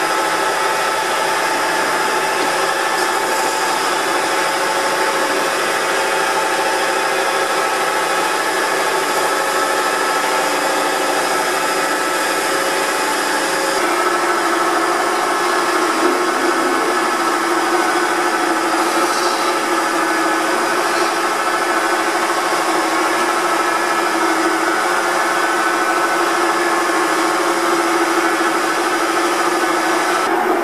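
Wood lathe running with a steady hum while a turning tool cuts into the end of the spinning wooden blank, hollowing a shallow dimple like the punt in a wine bottle's base.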